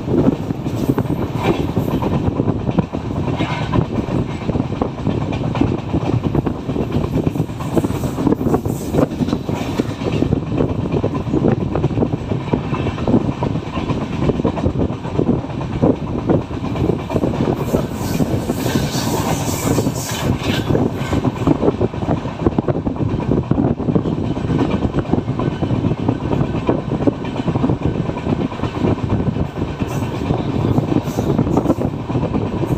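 Passenger train coach running at speed, heard from its open doorway: a steady rumble of wheels on rails with rapid clickety-clack from the wheels over the rail joints.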